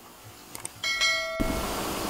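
Subscribe-button animation sound effect: a couple of faint clicks, then a bright bell chime that cuts off suddenly after about half a second.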